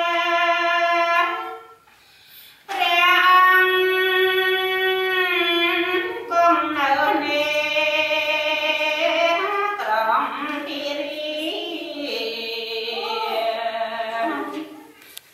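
A high voice singing long held notes that bend and slide, with a short break about two seconds in.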